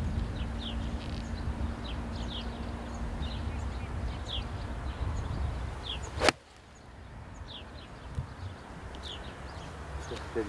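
Golf iron striking the ball once, a single sharp click about six seconds in, with wind rumbling on the microphone before it. Small birds chirp now and then.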